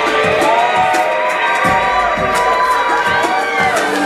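Audience cheering and whooping over the instrumental intro of a pop song with a steady beat, played loud through the hall's sound system.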